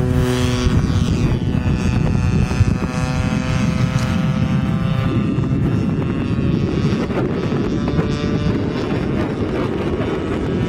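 Converted Homelite 30cc two-stroke gasoline engine on a giant-scale RC plane buzzing at high throttle as the plane takes off and climbs away, its pitch shifting and gliding down about a second in. A rough rumble of wind on the microphone runs underneath from then on.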